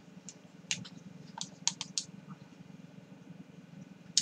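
Marker pen on a small whiteboard: a few short, sharp scratches and taps in the first two seconds, over a faint steady low hum.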